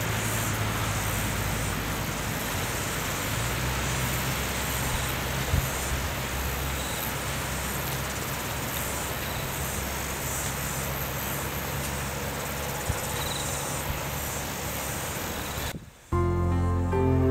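Outdoor ambience: a steady high-pitched insect chorus that pulses slightly, over a low steady rumble, with two brief soft knocks.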